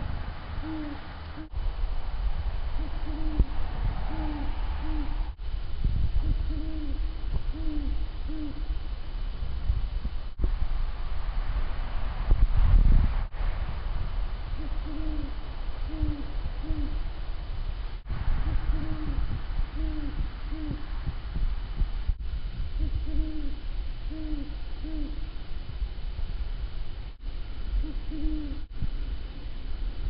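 Two great horned owls hooting: deep hoots come in groups of three to five, repeated all through, with a low rumble of noise on the camera microphone that is loudest about twelve seconds in.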